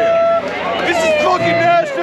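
A man's voice shouting and singing close up, holding two long wavering notes, over the babble of a packed bar crowd.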